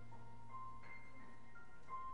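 Slow instrumental music: a melody of held single notes, a new note about every half second, over a low note held throughout.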